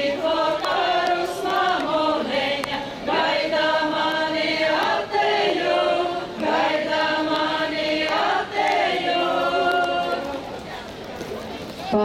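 A women's ethnographic folk ensemble singing a Latgalian folk song together in several voices, in long held phrases. The song ends shortly before the close.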